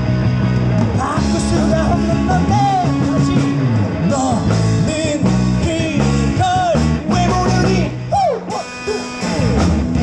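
A live rock band playing a wordless stretch of a song: melodic lines bending up and down in pitch over a steady bass line, with a brief drop in loudness near the end.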